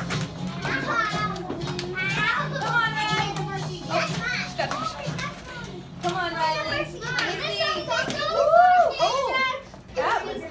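Preschool children's voices filling a classroom: high-pitched chatter and calls overlapping throughout, loudest with a shout about eight and a half seconds in.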